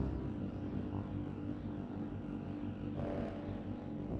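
Dark ambient noise drone: a low steady hum under a grainy haze, which swells brighter briefly about three seconds in.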